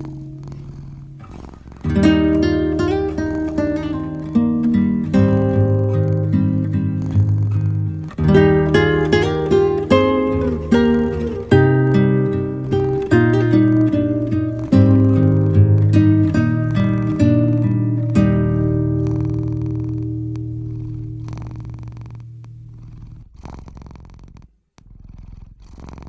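Relaxing solo acoustic guitar music, plucked notes ringing and decaying, with a cat purring underneath. The playing thins out and fades over the last several seconds, almost stopping shortly before the end.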